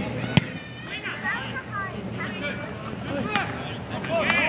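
Scattered shouting voices of players and sideline spectators at an outdoor game, with a single sharp knock about half a second in.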